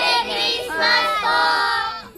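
A group of children's voices in unison, high-pitched and drawn out in a sing-song chorus, stopping shortly before the end.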